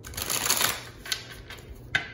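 Tarot cards being shuffled: a quick, dense patter of card flicks for most of the first second, then a single snap of a card about a second in and another, sharper one near the end.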